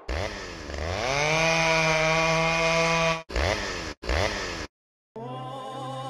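A small engine revs up from low to a high, steady pitch and holds there for about two seconds. It then cuts off and gives two short blips of revving.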